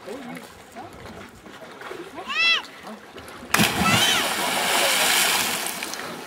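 A person hitting deep lake water after a cliff jump: a short shout about two seconds in, then a big splash about three and a half seconds in, its spray noise fading over the next two seconds.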